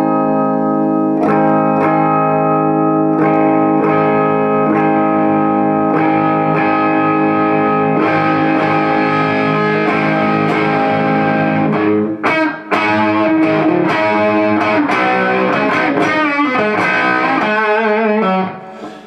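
Harley Benton HB35 Plus semi-hollow electric guitar on its bridge pickup, played through a Bugera V22 valve combo, its volume knob being brought up from zero. Held, ringing chords for about the first twelve seconds, then quicker, choppier picked chords.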